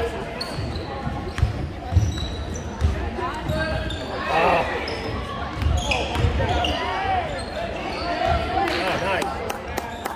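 A basketball dribbled on a hardwood gym floor, a run of repeated bounces, with sneakers squeaking on the court and spectators talking.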